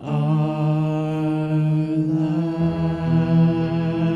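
Singers and a string ensemble with piano holding a long sustained chord at the close of the hymn, a lower bass note joining a little past halfway.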